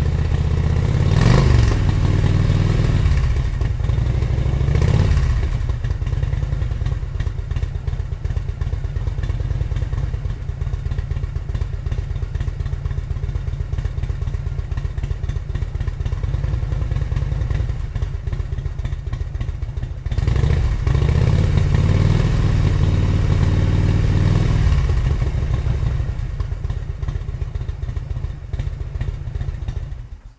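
Motorcycle engine running, revved briefly twice in the first few seconds and again several times from about twenty seconds in.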